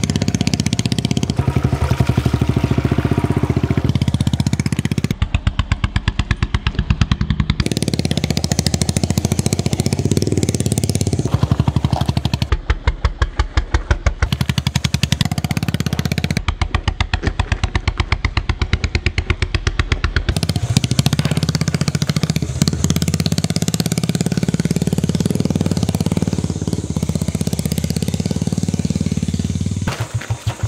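Modified Royal Enfield Bullet single-cylinder motorcycle engine running at low revs while the bike climbs a rough, rocky dirt track. The sound shifts abruptly several times, with stretches of separate, evenly spaced exhaust thumps.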